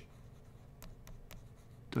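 Quiet room tone with a few faint, sharp clicks about a second in.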